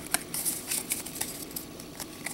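Pokémon trading cards being slid and flicked past one another in the hands, a string of short, light ticks and swishes of card stock.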